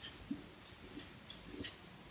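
Faint, short strokes of a felt-tip marker on a whiteboard as a word is written, a handful of soft scratches spaced through the moment.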